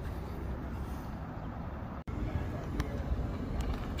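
Steady low outdoor background rumble, broken by a sudden brief dropout about two seconds in.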